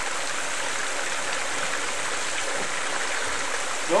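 Water from a homemade mini gold trommel pouring and splashing steadily onto the riffles of a sluice box.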